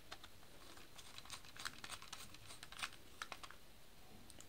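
Faint, irregular small clicks of a screwdriver turning a terminal screw to clamp a wire in a plastic switch-plate terminal.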